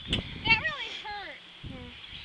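A girl's wordless voice: a few short sliding vocal sounds, just after a brief click at the start.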